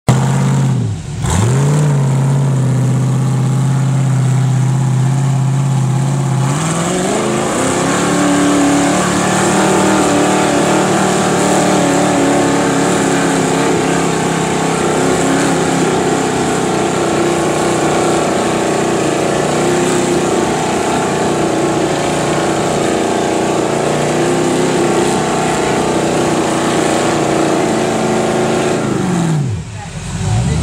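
Rock crawler buggy's engine working up a steep rock climb. It runs steady at low revs for the first few seconds, then revs up about six seconds in and is held high under load for over twenty seconds while the buggy churns up dust on the rocks. The revs drop off just before the end.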